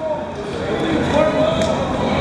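Several voices of players and spectators calling out and cheering in a large indoor sports hall, growing louder through the two seconds, with no ball strikes heard.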